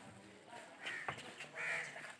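Two short bird calls, under a second apart.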